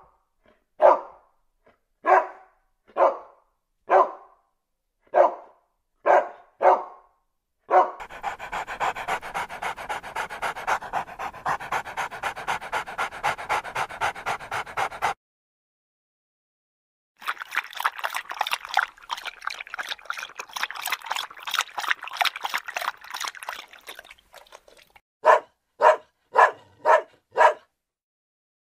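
A dog barking: about seven single barks roughly a second apart, then two long stretches of rapid pulsing dog sounds with a short pause between them, then a quick run of five barks near the end.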